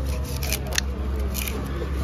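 A large curved knife slicing raw yellowfin tuna meat into strips on a wooden chopping block, with a few short, sharp scraping strokes as the blade draws through the flesh and meets the wood. A steady low rumble runs underneath.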